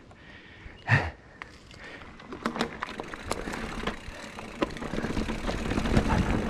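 Mountain bike rolling down a dry dirt singletrack: tyre noise on the dirt with frequent small clicks and rattles from the bike over bumps and wind on the microphone, building as it picks up speed. A brief thump about a second in is the loudest single sound.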